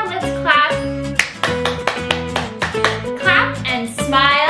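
Children's action song: a sung voice comes in twice over a backing track with a steady beat and held notes.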